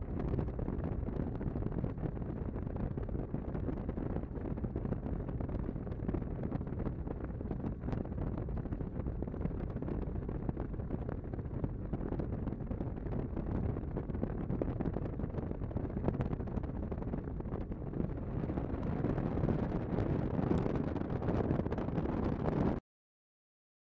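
Bass boat running under outboard power: a steady low rumble of engine, hull and wind noise on the microphone, growing a little louder near the end.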